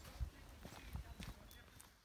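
Faint footsteps on a dirt trail covered in dry leaves, a handful of uneven steps, fading out at the end.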